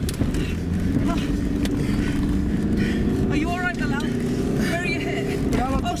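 Car engine running hard as the car is floored, heard from inside the cabin, with a steady hum throughout.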